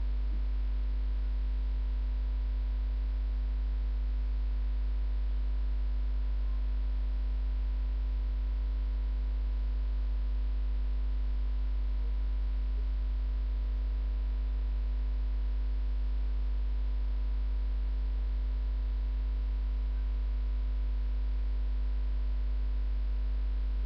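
Steady low electrical hum with a few faint higher steady tones and light hiss, unchanging throughout: mains hum picked up in a webcam recording.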